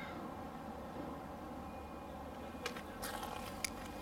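Faint, steady low background hum, with a couple of soft clicks and a brief rustle in the last second and a half.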